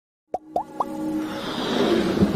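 Intro sound effects for a channel logo: three quick plops, each rising in pitch, then a swell that builds steadily in loudness.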